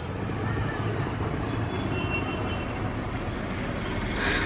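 Steady low rumble of city traffic.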